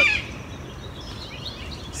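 A bird's harsh, wavering call that ends a moment after the start, followed by faint bird chirps over low, steady background noise.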